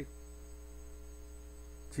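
Steady low electrical mains hum, with nothing else over it.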